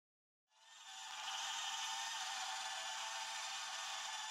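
Candyfloss sample-based virtual instrument playing its 'Musique Concrete 1' preset from a keyboard: a dense, grainy, high-pitched texture with nothing in the bass. It swells in about half a second in and then holds steady.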